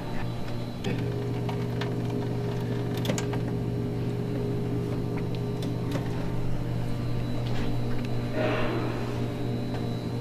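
A steady electrical hum with a buzzy row of overtones, thickening slightly about a second in, with a brief rush of noise near the end.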